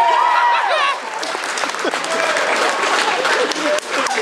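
A crowd cheering and shouting, then clapping steadily from about a second in: spectators applauding a horse and rider who have cleared a 170 cm puissance wall.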